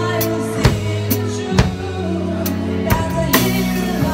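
Acoustic drum kit with Sabian cymbals played along to a recorded song with singing: about five sharp drum and cymbal hits over the song's sustained chords and bass.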